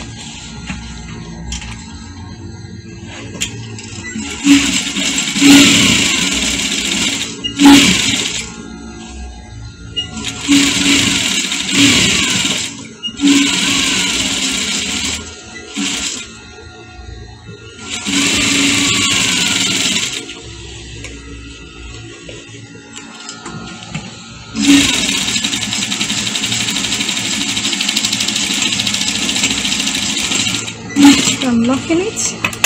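Zoje industrial sewing machine stitching in about six bursts of one to a few seconds, each starting with a knock and stopping as the fabric is repositioned; the longest run comes near the end. Music plays underneath.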